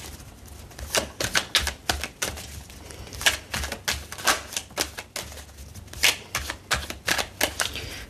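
A deck of tarot cards being shuffled by hand, cards pulled from one hand into the other, making quick irregular clicks and flutters with a few short pauses.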